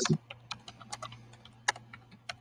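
Typing on a computer keyboard: a string of irregular key clicks, one louder near the end, over a low steady hum.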